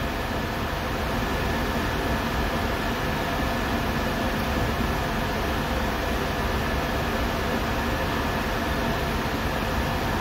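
Steady background hum and hiss from running machinery, unchanging throughout, with a faint steady high tone.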